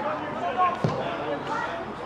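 Indistinct shouts from players on the pitch, with a football struck once, a sharp thud just under a second in.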